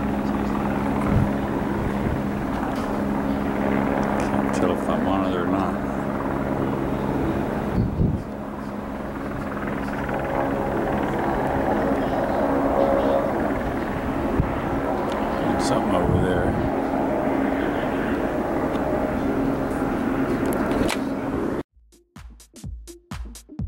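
Helicopter running steadily with a low hum, under indistinct chatter of people nearby. Music starts abruptly right at the end.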